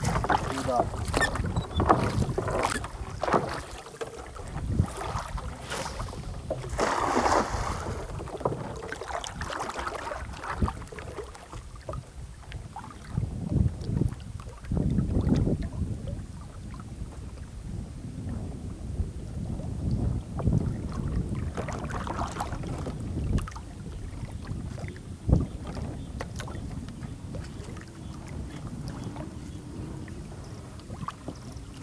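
Cast net being hauled out of the water into a small boat: water splashing and streaming off the mesh, with knocks and low thumps against the hull. The busiest splashing comes in the first few seconds and again around seven seconds in, with wind on the microphone throughout.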